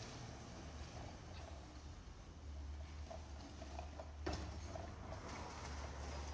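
Low, steady rumble of distant idling truck engines, a garbage truck and a passing delivery truck, with a single sharp knock a little past four seconds in.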